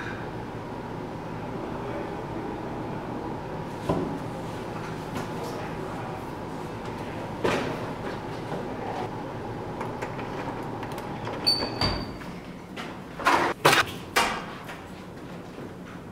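Steady background hum with a few scattered sharp knocks, then three loud bangs in quick succession near the end.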